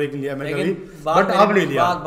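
A man speaking in Hindi; no other sound stands out.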